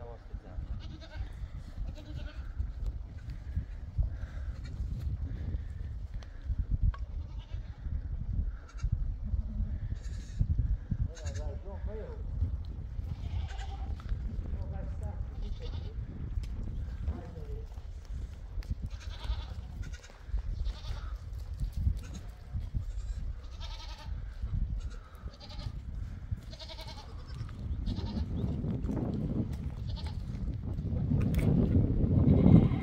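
Goats bleating now and then, one wavering bleat about eleven seconds in, over a steady low rumble.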